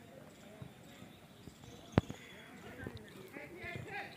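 Distant shouts and voices of players during an outdoor football match, with one sharp thump about two seconds in.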